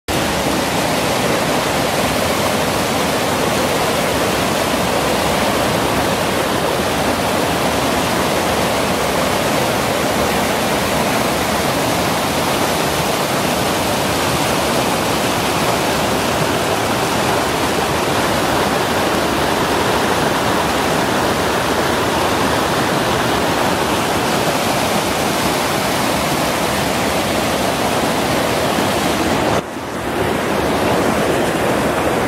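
Fast alpine mountain stream rushing and splashing over boulders in whitewater: a loud, steady rush of water, with a brief dip just before the end.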